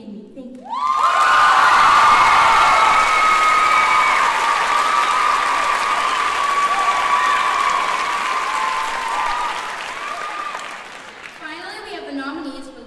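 A large audience applauds, with many voices cheering and shouting over it. It starts abruptly about a second in and dies down near the end.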